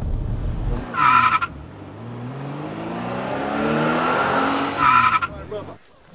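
Car cabin road rumble that cuts off about a second in, followed by a short high squeal, then an engine note rising in pitch and a second short squeal near the end before the sound cuts off suddenly.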